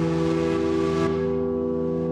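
Experimental electronic drone music: many sustained tones held steady and layered, with a high hiss that fades away about a second in.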